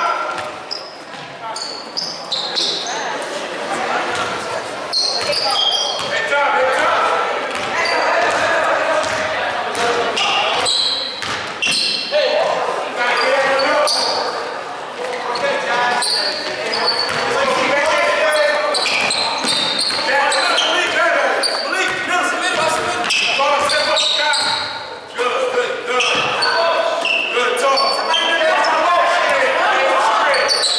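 A basketball being dribbled on a hardwood gym floor, with sharp repeated bounces. Voices of players and spectators echo around the hall throughout.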